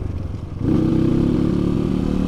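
A Kawasaki KLX 150's single-cylinder four-stroke engine running on the road, tuned for more power without a bore-up. Its note drops briefly, then comes back stronger about half a second in and holds steady.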